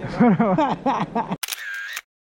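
A man speaking for about a second and a half, cut off abruptly by a camera-shutter click sound effect as the picture freezes on a posed photo.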